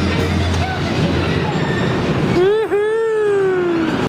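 Carousel music mixed with the running noise of a fast-spinning carousel. About two and a half seconds in, a rider's voice cuts through with one long cry that dips sharply in pitch, then holds and slowly falls.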